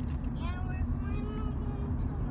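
Steady low road and engine rumble of a van driving, heard inside the cabin. A faint voice sounds once in the middle, falling in pitch.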